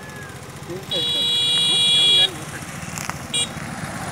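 Vehicle horn: one long, steady honk of about a second, cutting off abruptly, then a short toot about a second later.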